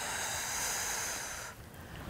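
A woman's long, audible exhale, a breathy rush of air lasting about a second and a half before it fades.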